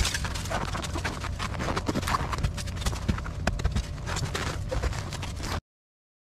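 Packed snow being dug and scraped out of a truck wheel's spokes by a gloved hand: a dense, irregular run of crunching and scraping that cuts off abruptly near the end.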